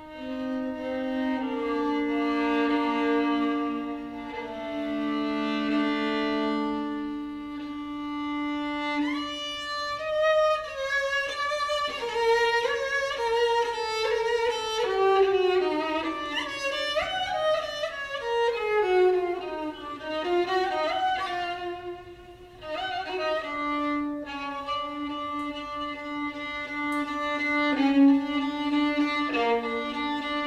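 Solo violin playing an improvised taksim in Ottoman makam style. Long held low notes open it, then a fast run of gliding, ornamented phrases winds downward from about ten seconds to twenty seconds in, before it settles back onto sustained low notes.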